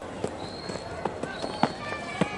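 Open-air cricket ground ambience picked up by the field microphones: a low steady hiss of a sparse crowd, with a few faint high calls and several light, scattered knocks.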